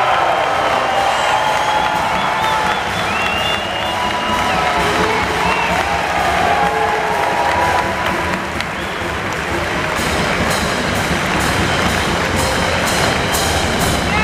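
Crowd applauding and cheering in an arena, with music playing under it. Sharp hand claps close by stand out in the last few seconds.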